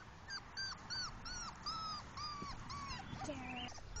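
Four-week-old English Pointer puppy whining in a string of short, high cries, about three a second, the later cries drawn out longer.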